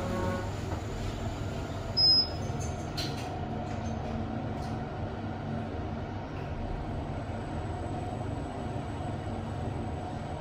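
Schindler 5000 machine-room-less lift car: a short high beep about two seconds in as the glass doors shut, then the car travelling with a steady low hum and a faint steady whine from the drive.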